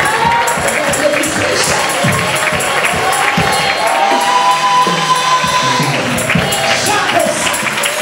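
Church congregation singing a lively praise song, with rhythmic hand-clapping keeping the beat.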